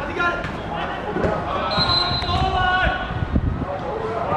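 Voices calling out across a football pitch, with several dull low thuds in the second half.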